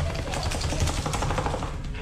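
A wet Cardigan Welsh Corgi shaking itself off mid-bath, its ears and soaked coat flapping in a fast rattle that lasts about a second and a half.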